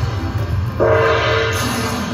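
Slot machine sound effect for the Lucky Chance Spin feature on a Dragon Link 'Happy & Prosperous' game: about a second in, a gong-like ringing tone over a rushing noise starts suddenly, and a lower tone follows. It plays as the remaining credits are gambled, over a low steady casino hum.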